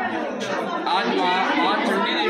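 Mostly speech: a man talking, with the chatter of a crowd of people behind him.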